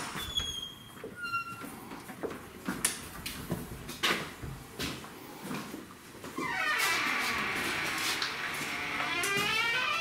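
Footsteps and door-latch clicks, then an old metal door creaking open on its hinges with a long, wavering squeal over the last few seconds.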